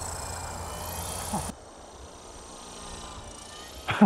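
Electric brushless motor and large folding propeller of an RC foam flying wing buzzing in flight, several high whining tones sliding slowly down in pitch. It cuts off abruptly about a second and a half in, leaving a fainter, lower hum.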